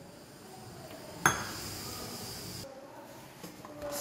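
Hands working flour in a stainless steel bowl, with a sharp metallic clink against the bowl a little over a second in, followed by a hiss of about a second and a half that cuts off suddenly.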